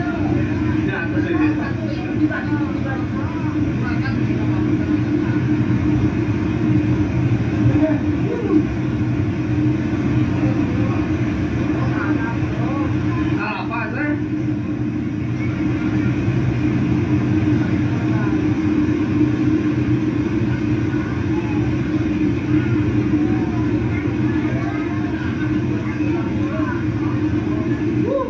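Steady, loud rumbling rush of fast-flowing floodwater, with people's voices faintly underneath.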